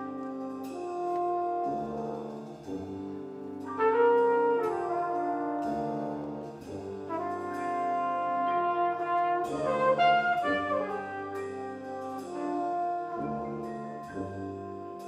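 Live high school jazz big band playing: sustained brass and saxophone chords with tuba and piano, the harmony moving every second or two.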